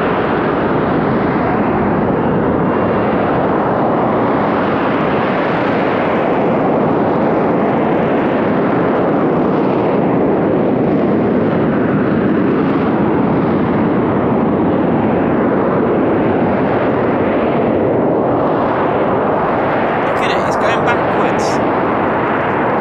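Loud, steady jet noise of a hovering Harrier's Rolls-Royce Pegasus vectored-thrust engine, swelling and easing slightly.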